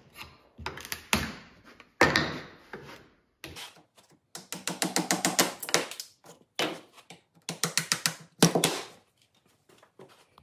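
Template boards being pried off a wooden workpiece where strong double-sided tape holds them. A sharp crack comes about two seconds in, then several short bursts of rapid clicking and crackling as the boards are worked loose.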